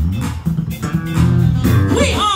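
Live band playing an instrumental stretch, with bass guitar and guitar to the fore.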